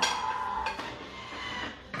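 A Thermomix's blades running at speed 5, chopping a garlic clove: a steady whirring with a faint whine that dies away near the end as the 5-second chop finishes.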